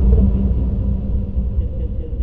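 Deep, steady rumble with a low hum, slowly fading: the sound bed of a logo outro animation.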